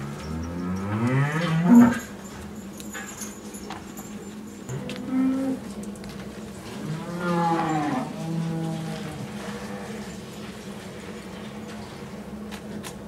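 Dairy cows mooing: a long rising moo in the first two seconds, the loudest, a short moo about five seconds in, and another long moo around seven to eight seconds.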